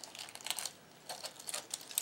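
Faint crinkling and small ticks of paper flower petals being pinched and fluffed up by fingers.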